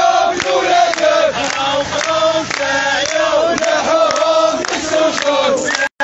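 A crowd of protesters chanting slogans together, with hand-clapping.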